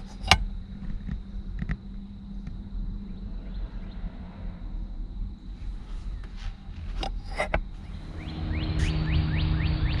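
Handling noises from inside a parked car: a few light clicks, three of them close together about seven seconds in, over a low steady hum. Near the end a louder rush of noise comes in, with a rapid run of short high squeaks.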